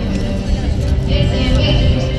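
Live song: a young woman singing into a microphone, accompanied by acoustic guitar and a Casio electric keyboard.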